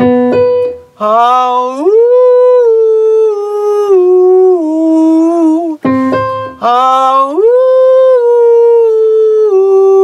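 A keyboard briefly plays the starting notes, then a man sings a sustained vowel that slides up to a high held note and steps down again. The keyboard cue and the sung slide happen twice. It is a vocal exercise for singing near the top of the range.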